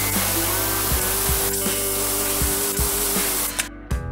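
Compressed air hissing steadily out of an aluminium scuba cylinder's valve as the tank is bled down to a lower pressure; the hiss cuts off abruptly near the end.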